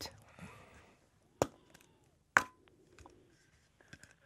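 Two sharp clicks about a second apart on an otherwise quiet telephone line, with a few fainter ticks, as the call is picked up after the ringing tone.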